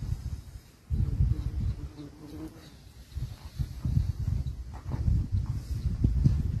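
Wind rumbling in gusts on the microphone, with an insect buzzing close by for a second or so, about a second in.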